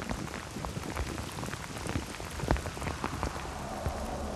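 Steady rain, with many separate drops striking a hard surface close by; one hit about two and a half seconds in stands out louder than the rest.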